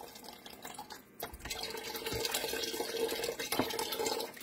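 Beef broth pouring from a carton into a stainless steel pot of liquid: a steady splashing pour that starts about a second in and runs on evenly.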